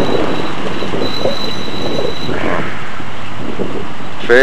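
Steady, loud road-traffic noise with a thin, high-pitched squeal heard twice: briefly near the start, then again for over a second around the middle.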